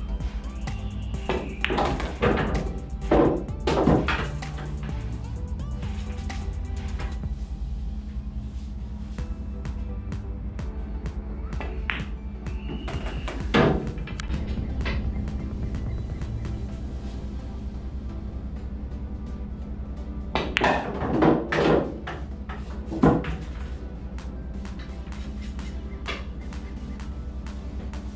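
Background music with a steady low beat. Over it come sharp clacks of pool balls, from the cue striking the cue ball and balls knocking together: a cluster of several in the first few seconds, one near the middle, and another cluster a few seconds before the end.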